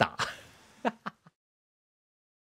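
A man's voice finishing a word, then a few short throaty vocal sounds, and the sound cuts off to dead silence about a second and a half in.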